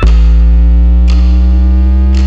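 Electronic music: a loud, sustained synthesizer bass note that comes in suddenly, held steady, with a short sharp hit about a second in.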